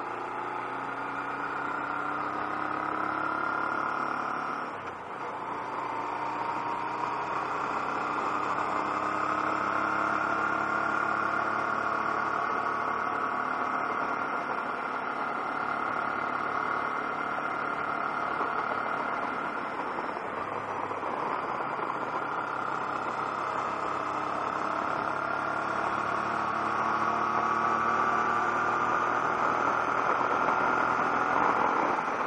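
Honda NT700V's V-twin engine running at road speed over a steady rush of wind and road noise. Its pitch rises and falls slowly as the throttle changes, with a brief dip in level about five seconds in.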